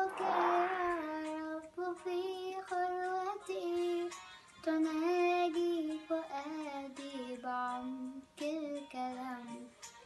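A young girl singing an Arabic Christian hymn (tarnima) solo, holding long notes and sliding between them, with short breaks between phrases.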